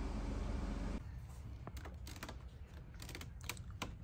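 A steady low hum that cuts off about a second in, followed by scattered sharp clicks and short rustles of objects being handled.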